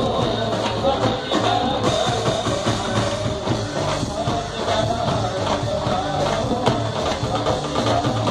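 Live band playing dandiya dance music: a dhol and drums keep a steady, driving beat under a wavering melody.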